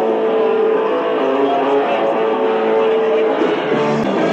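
A live southern rock band playing, with long held notes over a dense, steady band sound.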